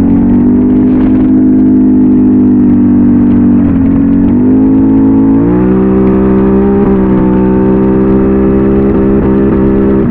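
Can-Am Renegade XMR 1000R ATV's V-twin engine running loud and steady under throttle while riding. Its pitch dips briefly a little under four seconds in, then climbs in two steps to a higher steady note.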